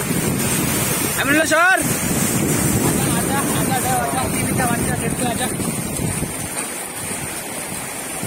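Wind buffeting the microphone over the steady wash of surf on a beach. A voice calls out briefly about a second and a half in, and fainter voices follow a few seconds later.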